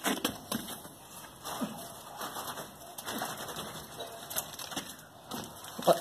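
Scattered soft clicks and wet scraping from a steel rebar column cage being shaken in freshly poured concrete, settling the concrete around the steel.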